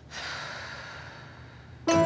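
A long, soft sigh that fades out slowly. Just before the end, louder plucked-string music comes in.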